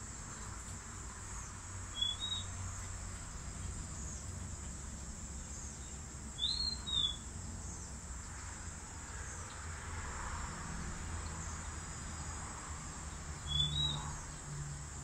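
Steady high-pitched drone of insects, with a bird calling in short rising-and-falling chirps: once about two seconds in, twice near the middle and once near the end. A low rumble runs underneath.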